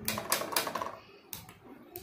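A metal spoon scraping and clicking against a small bowl of mashed food: a quick run of clicks in the first second, then a couple of single clicks.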